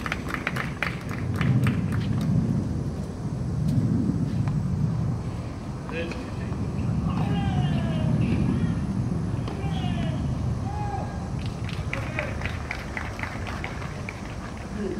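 Scattered applause from spectators at an outdoor tennis court after a point, over a steady low rumble and the murmur of voices. A second run of sharp taps comes near the end.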